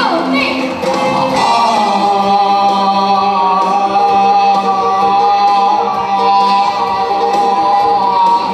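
Live band playing a cha-cha with a man singing into a microphone. From about a second and a half in he holds one long note to the end.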